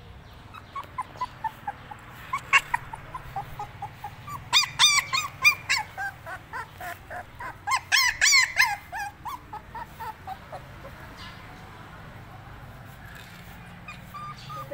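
Puppy yelping and whimpering in quick runs of short, high cries, loudest about five and eight seconds in, dying away after about ten seconds.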